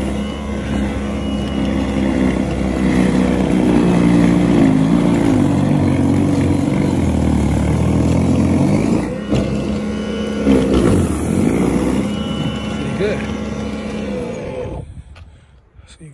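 Ryobi 21-inch brushless battery-powered snowblower running as it is pushed through snow, a steady electric motor and auger hum whose pitch shifts as it loads up. A couple of knocks come about nine and ten seconds in, from the machine hitting uneven pavement, and the motor stops near the end.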